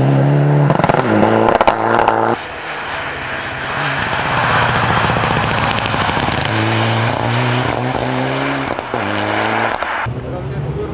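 Mitsubishi Lancer Evolution rally car's turbocharged four-cylinder engine revving hard through gear changes as it passes on a snowy stage, with sharp crackling pops about a second in. The sound cuts off abruptly about two and a half seconds in to a stretch of noisy engine and tyre rush, and the rising and falling revving note comes back near the end.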